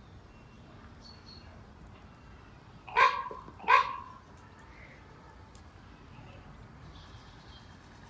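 A dog barking twice in quick succession, two short loud barks about two-thirds of a second apart.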